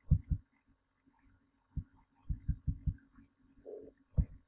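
Soft, low thumps at an uneven pace over a faint steady hum: two near the start, one a little before two seconds, then a quick run of about six. A brief faint mid-pitched sound comes just before the end.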